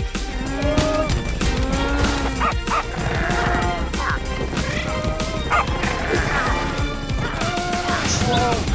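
Animated-series soundtrack: background music with a cartoon dog's short, repeated barks and yips over it.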